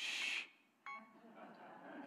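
Electronic timer alarm going off with short beeping tones. A burst of hissy noise comes right at the start, and one more brief beep with a click follows about a second in before it stops.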